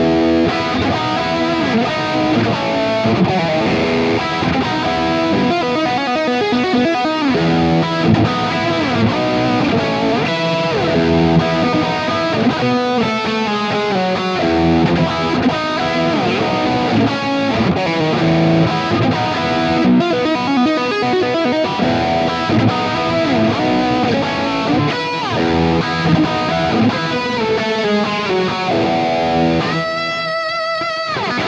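Harley Benton CST-24 Deluxe semi-hollow electric guitar being played, a mix of strummed chords and single-note lines with sliding and bent notes.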